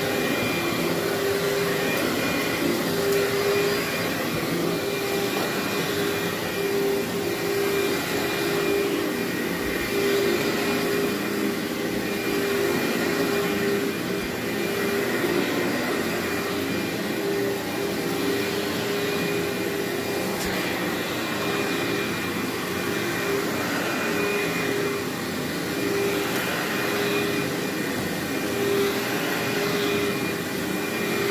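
Upright vacuum cleaner running continuously as it is pushed back and forth over carpet, a steady motor hum throughout.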